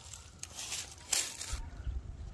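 Faint rustling of tea-bush leaves, with a short louder rustle a little over a second in and a low rumble near the end.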